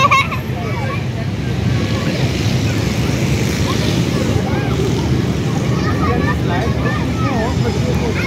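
Outdoor playground ambience: a steady low rumble with faint voices of children and adults in the background.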